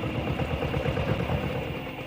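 Two-wheeled walking tractor's single-cylinder diesel engine running with a rapid, even chug as the tractor passes.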